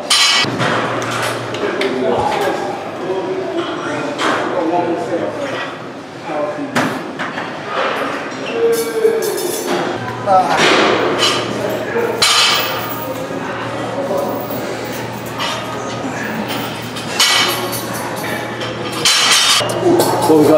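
Gym ambience: indistinct voices with scattered metallic clinks and knocks from weights and a dip-belt chain, and a low steady hum for part of the time.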